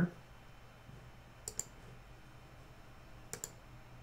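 Two computer mouse clicks, about two seconds apart, each a quick press-and-release double tick, submitting an answer and confirming it in a dialog box.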